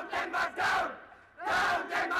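Crowd of male protesters shouting slogans together, in two loud phrases with a short break about a second in.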